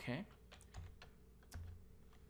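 A few separate keystrokes on a computer keyboard, single taps spaced well apart.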